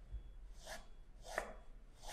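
Tailor's chalk drawn across cotton fabric on a table: two faint, short scratchy strokes, a little under a second apart, marking a cutting line.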